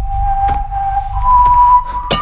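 A menacing whistled tune from an animated film's soundtrack, the wolf villain's signature whistle: one held note that steps up to a higher held note about a second in, over a low, dark rumble of score.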